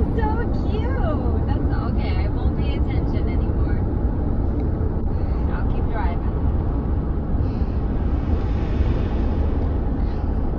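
Steady low rumble of road and engine noise inside a moving car's cabin, with a child's voice making a few faint sounds at the start and again about six seconds in.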